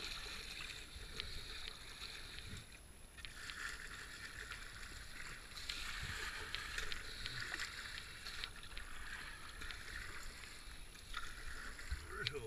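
Kayak paddling in a fast river channel: paddle blades splashing in and out of the water, with the rush of water along the hull and a few light clicks. The splashing swells and eases with the strokes.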